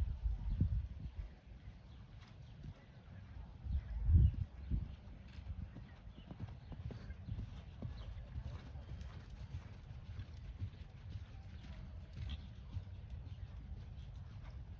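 Hoofbeats of a horse trotting on the sand footing of a dressage arena: a steady rhythm of soft thuds. Low rumbling runs underneath, with two louder low thumps about a second in and around four seconds in.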